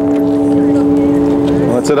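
A harmonica chord held steadily, several reedy notes sounding together, with a voice starting in near the end.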